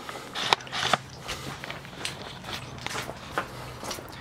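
Handling noise from a handheld camera being moved about: a few light knocks and rustles over a steady low hum.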